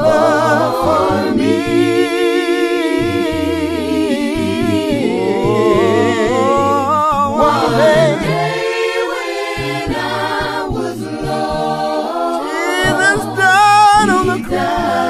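Several voices singing a hymn a cappella in harmony, with no instruments, in the unaccompanied congregational style of the Churches of Christ.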